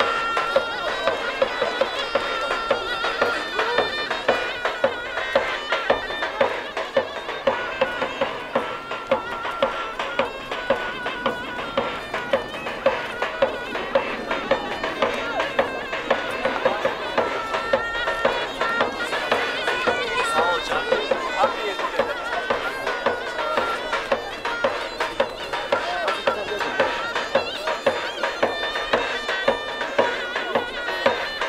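Davul and zurna playing a traditional folk tune: a shrill, reedy melody that wavers in pitch, carried over regular bass drum beats.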